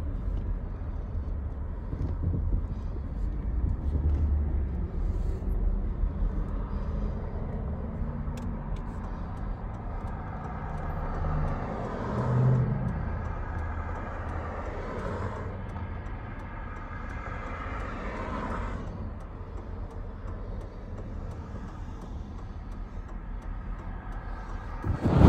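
A pickup truck running, heard from inside the cab: a steady low rumble, with the engine note rising and falling.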